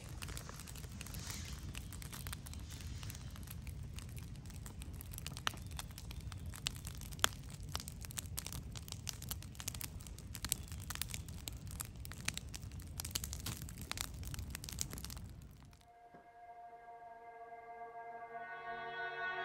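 Wood campfire burning: a steady low rush with frequent sharp crackles and pops. About sixteen seconds in, the fire sound stops and soft music with held notes begins.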